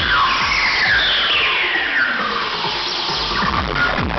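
Loud acid house rave music over a festival sound system, heard from within the crowd: the kick drum drops out for a breakdown while a synth sweep falls steadily in pitch, and the beat comes back in near the end.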